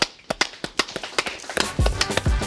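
A few people clapping: irregular sharp hand claps, several a second.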